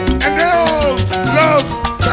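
Salsa band playing: steady hand-percussion strokes over a bass line, with a lead line that swoops up and falls back in pitch twice.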